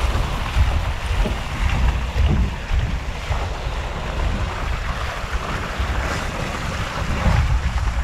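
Water rushing along an open water slide with the rider sliding through it at speed, and wind buffeting the camera microphone as a steady low rumble.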